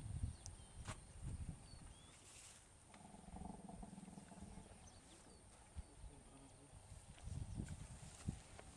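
Sedated elephant breathing heavily in low bursts near the start and near the end, with a low drawn-out groan about three seconds in that lasts a second and a half.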